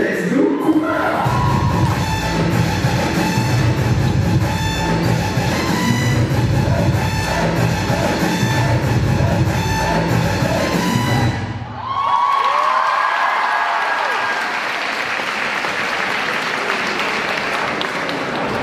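Dance music with a heavy, even beat plays loudly and cuts off suddenly about eleven seconds in. A large crowd then cheers and applauds, with a few whoops.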